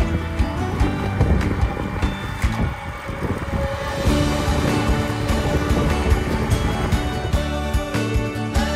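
Background music with a beat, growing fuller about four seconds in.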